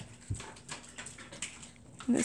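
A highlighter being handled and drawn across a paper textbook page: a soft knock about a third of a second in, then faint scratchy strokes and clicks.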